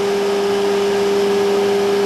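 A steady mechanical hum from running equipment. It is one strong even tone with a fainter lower one beneath it and does not change.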